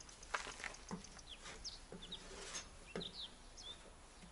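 Faint bird calls: several short high chirps scattered through, with a few brief low calls.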